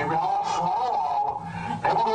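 A continuous whistling tone that wavers up and down in pitch, a comic sound effect of a rocket that has just been set going.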